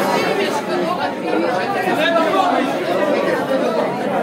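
Crowd chatter: many people talking at once in a crowded hall.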